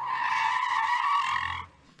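Tire-screech sound effect: one steady, high squeal lasting about a second and a half that cuts off suddenly.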